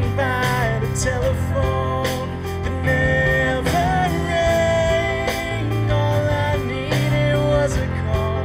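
Live band playing a pop-rock song: a man sings the lead melody over electric guitar, keyboard and a steady beat.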